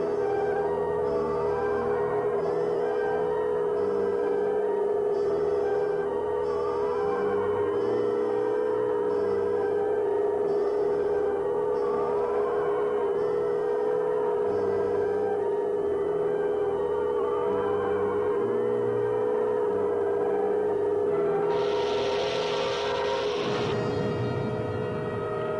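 Electronic science-fiction drone: a steady hum with warbling tones that rise and fall every couple of seconds and pulsing beeps above them. Near the end a rushing hiss comes in for about two seconds.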